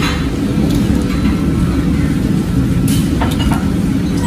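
A steady, loud low rumble runs throughout, with a few light clicks of chopsticks and tableware scattered through it.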